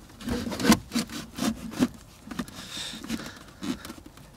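Irregular knocks, clicks and scraping as a car amplifier and its cables are handled and pressed into place on plastic trunk trim, busiest in the first two seconds, with a brief rubbing sound near the end.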